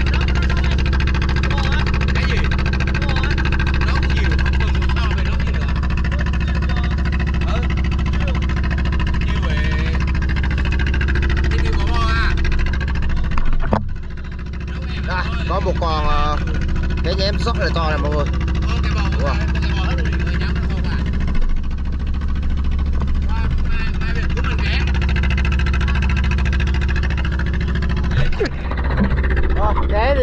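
Small fishing boat's engine running steadily under way, a loud low drone, with a brief dip about fourteen seconds in.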